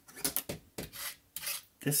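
A few short scrapes and light clicks of a small screwdriver and metal laptop parts being handled.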